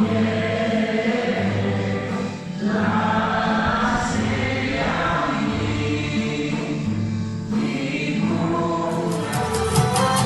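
Music with a group of voices singing in long held phrases over a steady bass, with short breaks between phrases. Near the end it gives way to a different piece with a quick, even, ticking beat.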